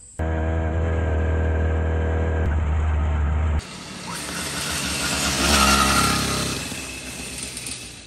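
Small two-stroke motorized-bicycle engine (BBR Tuning) running steadily up close for about three and a half seconds; then the chopper bicycle powered by it is ridden past, its engine sound swelling to a peak and fading away.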